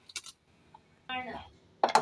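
Mostly quiet, with a light click at the start and sharp clinks near the end, as of a utensil on a ceramic plate. A short, falling vocal sound from a woman comes about a second in.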